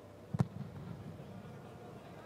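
A football kicked once, a single sharp thud about half a second in, likely the goalkeeper putting the ball back into play. It is followed by the faint, open ambience of an empty stadium.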